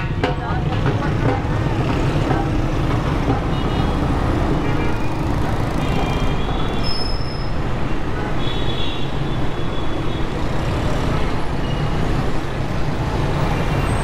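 Dense city road traffic heard from within it: a steady low rumble of engines and road noise, with several short horn toots scattered through.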